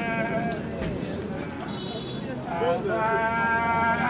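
Infant crying in several wavering, high-pitched wails, the strongest and longest over the last second and a half.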